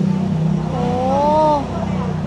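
A woman's drawn-out, wavering wordless vocal sound lasting about a second, over a steady low rumble.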